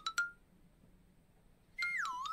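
Edited-in comedy sound effects: a quick run of electronic beeps climbing in pitch ends with a short held tone about half a second in. After a pause, a warbling whistle-like tone that slides down in pitch starts near the end.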